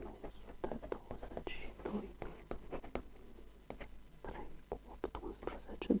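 Ballpoint pen scratching on paper as figures are written, with a woman murmuring quietly under her breath while she works out a sum.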